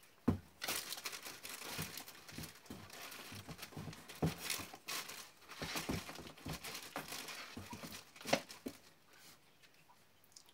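Shoes and other items being packed by hand into a corrugated cardboard shipping box: rustling and crinkling with irregular soft knocks against the cardboard. The sharpest knocks come just after the start and again about a second before the handling stops.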